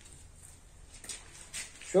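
Quiet room tone with two faint, brief soft sounds, then a man's voice begins right at the end.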